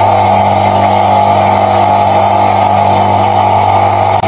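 Kasumi KA2150 induction-motor high-pressure washer switched on and running steadily, a loud even motor-and-pump hum with a strong low drone.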